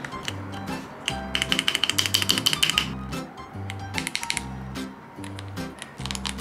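Background music with a steady beat, over two runs of fast plastic clicks as Lego keyboard parts and keycaps are pressed into place on the keyboard build.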